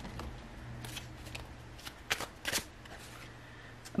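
Tarot cards being handled as a card is drawn from the deck: a few short card flicks and slides, the loudest about two seconds in.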